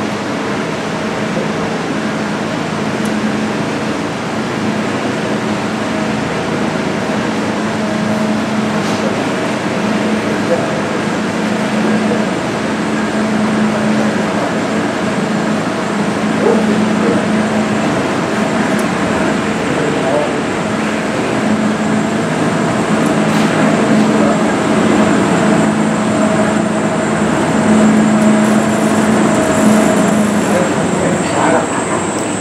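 Inclined elevator car climbing its sloped track toward the upper station, a steady mechanical running hum that grows slightly louder as the car nears.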